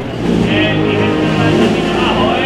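Processional band (banda de música) playing a slow march in sustained chords, with a high wavering tone joining about half a second in.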